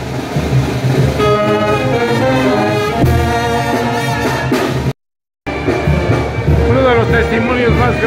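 A brass band plays festival dance music: trumpets and trombones carry the tune over a steady low bass. About five seconds in, the sound cuts out completely for half a second, then the music comes back with a man's voice over it.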